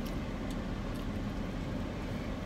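Steady low rumble in a parked car's cabin with the engine idling.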